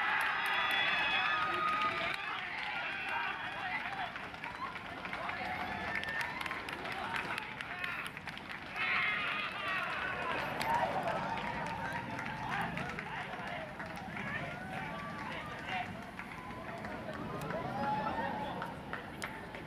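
Baseball players and spectators shouting and cheering at a game-winning run, many voices overlapping. The cheering is loudest at the start and rises again about nine seconds in.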